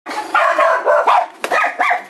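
A dog barking several times in quick succession.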